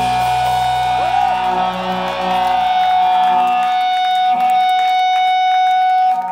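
Electric guitar and bass ringing out on a held final chord at the end of a live rock song, with one steady high note sustained over it. The low bass note cuts off a little under halfway through, leaving the guitar tones ringing.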